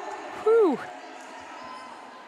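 A short vocal exclamation, one syllable gliding down in pitch, about half a second in, over a steady murmur of arena crowd noise.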